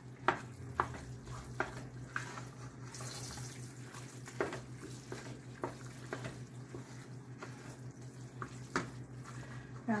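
A wooden spoon stirring a thick, wet mix of macaroni, ground beef and tomatoes in a pot, with irregular knocks of the spoon against the pot.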